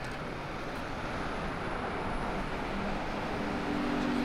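Street traffic noise: a steady rush of passing vehicles that grows louder as a double-decker bus draws near.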